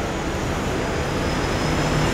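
Steady outdoor background noise: a low rumble with a hiss over it, with no speech.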